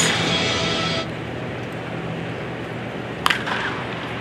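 A baseball bat strikes a pitched ball once, a sharp crack about three seconds in.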